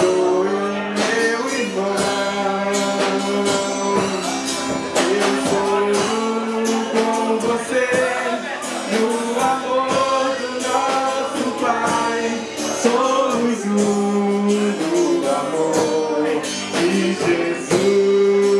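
A live gospel worship band playing, with singing over acoustic guitar and a drum kit keeping a steady beat.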